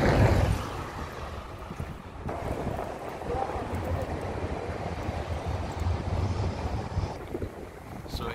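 Outdoor street ambience dominated by a low, uneven rumble of wind buffeting the phone microphone, strongest at the start and then settling to a steady level.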